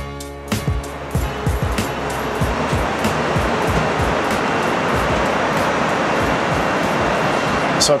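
Steady rushing roar inside an Airbus A380 cabin in flight. It swells up in the first second or so and then holds, with a few low, dull thumps through it.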